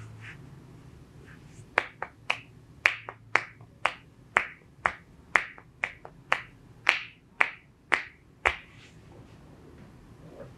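A run of about fourteen sharp snapping clicks, about two a second, made by the masseuse's hands during a hands-on leg and foot massage. The clicks stop about a second before the end.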